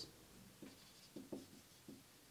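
Marker pen writing on a whiteboard: a few faint, short squeaks as the letters are drawn.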